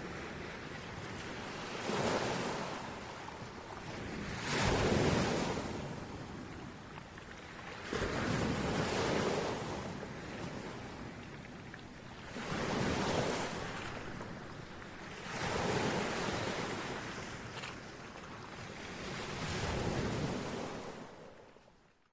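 Sea waves breaking on a shore: a rushing wash that swells and draws back six times, every three to four seconds, fading out at the end.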